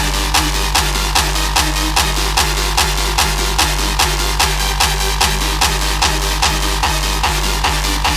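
Hardcore techno track: a heavy kick drum hitting steadily at about 148 beats a minute, roughly two and a half a second, with busy hi-hats and sustained synth lines over it.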